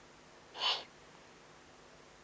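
Eurasian eagle-owl at the nest giving one short, raspy hiss-like call about half a second in.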